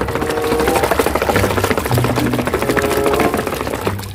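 A hand stirring and squelching through thick wet mud in a plastic bucket: a fast, irregular run of wet clicks and slaps.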